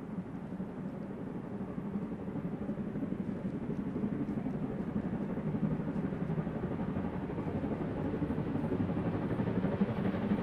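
Class 52 steam locomotive 52 8154-8, a two-cylinder 2-10-0, working uphill on the grade while still out of sight, its low rumbling exhaust growing steadily louder as it approaches.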